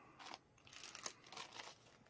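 Faint crinkling of clear-stamp packets, plastic sleeves handled in the fingers, in a few short rustles.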